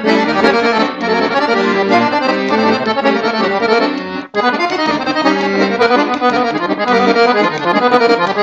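Solo Siwa & Figli chromatic button accordion playing a kolo, a Serbian folk dance tune, in quick runs of notes over a steady bass. The playing breaks off for a split second about four seconds in, then carries on.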